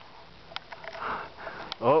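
A short sniff about a second in, with a few faint clicks around it.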